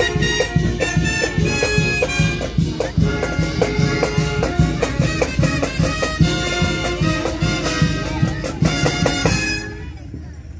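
Marching band of brass horns and drums playing a tune over a steady drum beat; the music stops near the end.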